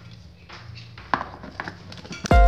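Quiet handling at a plastic food processor, with a few light clicks as the plastic lid is fitted onto the bowl.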